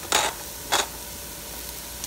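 Diced onion and red pepper sizzling quietly in olive oil in a Ninja Foodi pot on sear/sauté, with two short hissy bursts in the first second.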